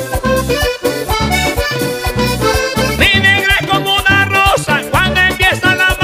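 Vallenato music led by a diatonic button accordion playing quick melodic runs, over bass and percussion keeping a steady beat.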